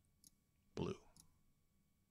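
A couple of faint, sharp computer mouse clicks.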